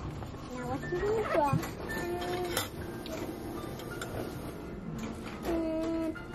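High-pitched voice sounds in short gliding phrases and a couple of held, sung-like notes, over faint background music, with a few light clicks.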